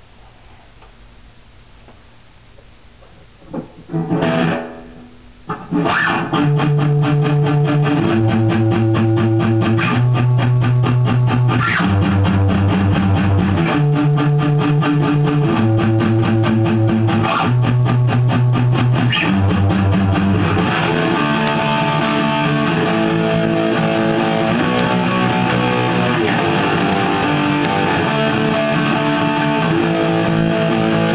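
Electric guitar played through a 15-watt Line 6 Spider III practice amp. After a few quiet seconds come a couple of loud chords, then a fast, evenly picked riff whose notes change every couple of seconds, growing busier and higher in the last third.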